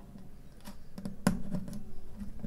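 Light handling clicks as a nylon classical-guitar string is worked through a hole in the guitar's bridge by hand. There are a few sharp ticks, the loudest about a second and a quarter in.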